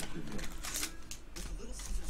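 Trading cards and their foil pack being handled: several short rustles and clicks of card stock through the second half.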